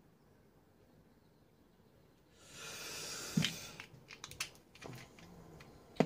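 Near silence, then a short hiss of about a second and a half, followed by a run of small clicks and taps as an e-liquid dropper bottle and vape mod are handled.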